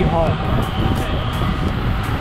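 Riding noise on a Yamaha MT-15 motorcycle in city traffic: wind rumbling on the microphone over the running motorcycle and the street traffic around it.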